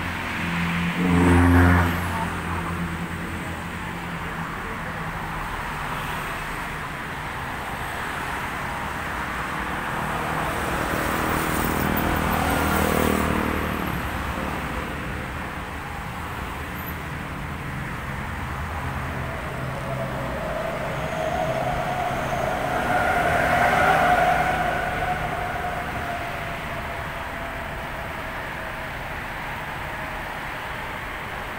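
Motor vehicle engine noise: a steady low hum that swells and fades twice, around twelve and twenty-four seconds in, with a short louder burst about a second and a half in.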